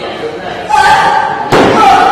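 Gloved punches landing on a heavy punching bag: two hits about three-quarters of a second apart, the second the hardest. Each hit is followed by a sustained tonal sound.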